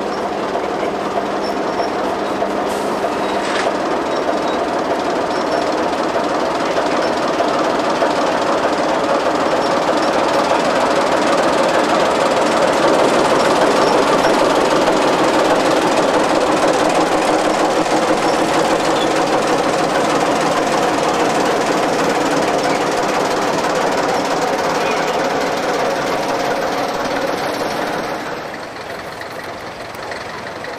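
A ČSD class T435 'Hektor' diesel locomotive passing close at slow speed with goods wagons rolling behind it, its engine running steadily. The sound swells to its loudest about halfway through as the locomotive goes by, fades slowly, then drops off abruptly near the end.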